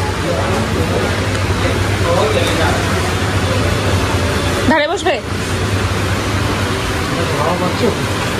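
Steady rushing noise of wall fans running in a small room, under low talk. About five seconds in comes one short voice sound with a sliding pitch.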